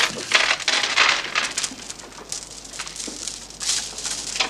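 Irregular clinks, knocks and rustling of small hard objects being handled and shuffled about, several sharp strokes a second at first, thinning out toward the end.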